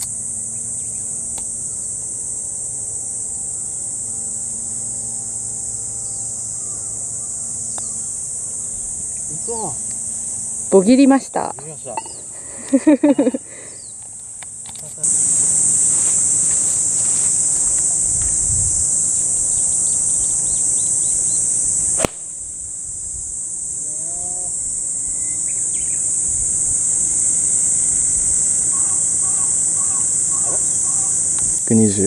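A steady, high-pitched insect chorus runs throughout and becomes louder about halfway through. Short bursts of voices come about eleven to thirteen seconds in, and a single sharp click comes about 22 seconds in.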